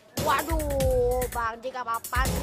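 A boy's drawn-out vocal exclamation, held and falling slightly in pitch, then broken into a few quick short calls, over background music.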